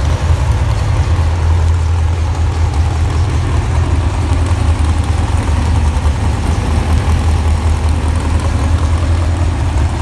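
Pulling truck's engine idling with a steady, deep low rumble as the truck rolls slowly on the track.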